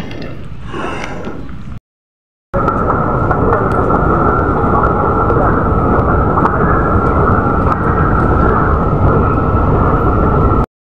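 Loud, steady rumbling noise, broken by a moment of total silence about two seconds in, with fainter noise before the break.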